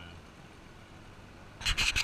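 Faint steady background noise, then near the end a quick run of loud rubbing and scraping noises close to the microphone.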